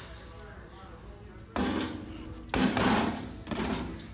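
Sticks of PVC pipe set down on a metal flatbed cart: a clattering knock with a short ringing tail about one and a half seconds in, a louder one about a second later, and a third knock near the end.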